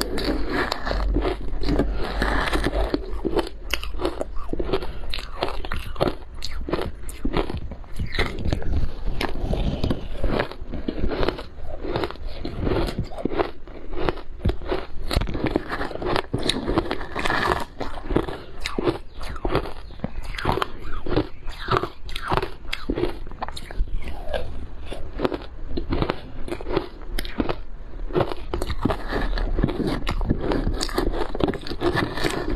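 Close-miked crunching and chewing of crushed ice mixed with matcha and milk powder: a dense, continuous run of crisp cracks and crunches. A wooden spoon scoops through the ice in a plastic bowl between bites.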